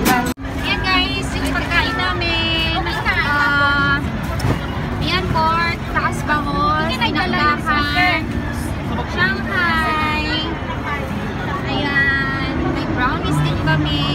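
Lively voices of several people talking and exclaiming over steady street traffic noise, with a brief dropout about half a second in.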